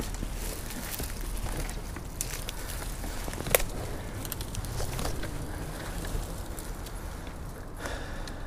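Dry twigs, branches and dead leaves crackling and rustling under someone moving through shoreline brush, with clothing rubbing close to the mic. One sharper snap comes about three and a half seconds in.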